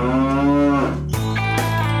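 A cow mooing: one long moo that rises in pitch and drops away as it ends about a second in, over steady background music.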